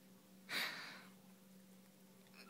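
A single short breathy exhale through the nose, like a stifled laugh or sigh, about half a second in, over a faint steady low hum.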